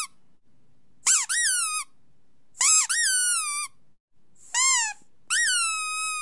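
A played sound of high-pitched squeaks, four in a row, each jumping up in pitch and gliding down, the last one held longest.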